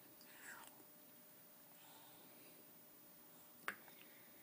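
Near silence while a small child eats noodle soup: a faint breathy mouth sound about half a second in as a noodle is drawn in, and a single sharp click near the end.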